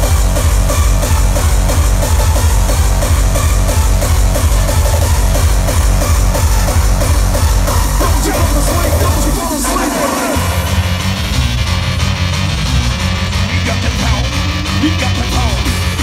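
Gabber hardcore dance music blasting through a large arena sound system, driven by a pounding, distorted-sounding kick drum with a repeating synth stab over it. About two thirds of the way through, the kick drops out for a moment, then comes back in.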